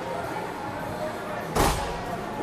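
A single sharp bang about one and a half seconds in, with a short echo, over a steady background of voices in the rink.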